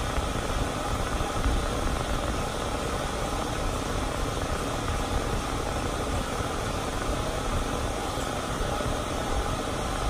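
Grooming stand dryer running, blowing a steady rush of air onto a dog's coat during hand fluffing.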